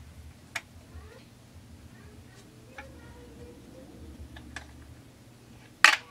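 Sparse light clicks and taps of a wrench and metal parts being handled on a bare chainsaw crankcase while the degree wheel is turned by hand, with one sharper click just before the end.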